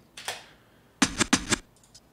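Sampled turntable scratching, a one-shot from a Yamaha CS1X keyboard, played back: a short scratch just after the start, then a quick run of sharp scratch strokes about a second in.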